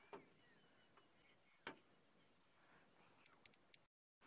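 Near silence outdoors in the bush, with a few faint clicks and ticks: one about two seconds in and a small cluster near the end. The sound drops out completely for a moment just before the end.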